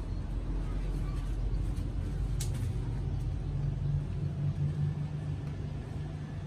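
A steady low rumble with an engine-like hum that grows stronger in the second half, and a single sharp click about two and a half seconds in.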